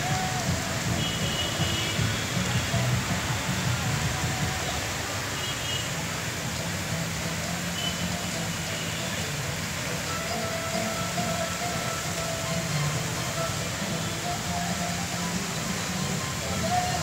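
Steady hiss of musical-fountain water jets spraying and falling into a lake, with faint music and scattered voices underneath.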